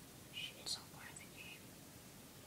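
Faint whispering: a few short breathy sounds in the first second and a half, then only quiet room sound.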